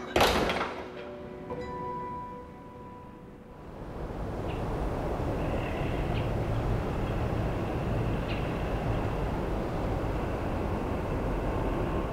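Music fading out over the first couple of seconds, then from about four seconds in a steady, low rumbling background noise with a few faint high tones.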